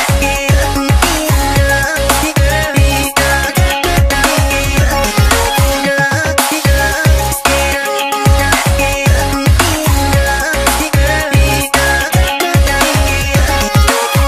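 Background electronic dance music with a steady beat of deep bass kicks that drop in pitch.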